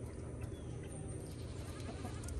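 Pigeons cooing low and steadily, with a few faint ticks of beaks pecking at seed.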